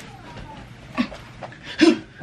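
A woman's short strained vocal sounds, two brief grunts about a second in and near the end, made with the effort of tugging tight pants up over shorts.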